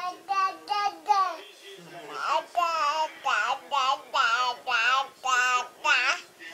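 Baby babbling: a string of short, high-pitched syllables that rise and fall in pitch, coming in quick runs with brief pauses between them.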